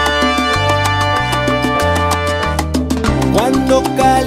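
Instrumental salsa music: a bass line moving in steady steps under held chords, with a dense run of percussion strokes and a short upward slide about three seconds in.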